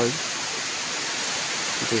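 A steady, even hiss of background noise, with the tail of a spoken word right at the start and speech starting again near the end.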